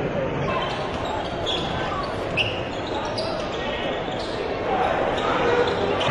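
Basketball arena crowd noise with a basketball being dribbled on the hardwood court and short high sneaker squeaks, the crowd growing a little louder near the end.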